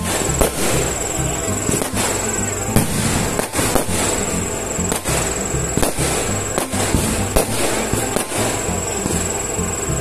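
Aerial firework shells bursting in repeated sharp bangs, roughly one a second, with music playing underneath.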